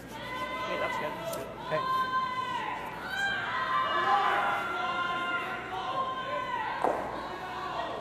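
Curlers shouting sweeping calls to the sweepers: a run of long, drawn-out yells, each held for about a second, one after another. A sharp knock comes about seven seconds in.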